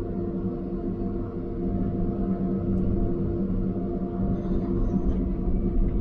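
Diesel engine of a John Deere logging machine running steadily, heard from inside its closed cab as a low, even drone; it gets a little louder about two seconds in as the machine starts to work.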